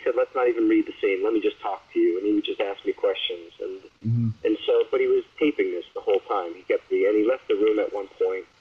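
Speech only: a person talking continuously, the voice sounding narrow, like over a call or radio line, with a brief low bump about four seconds in.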